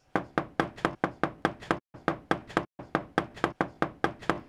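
Rapid, repeated knocking on a door, about four or five knocks a second, with two brief pauses in the middle.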